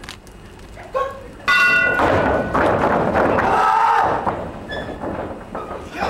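Wrestling ring bell rung about a second and a half in to start the match, followed by the crowd shouting and cheering.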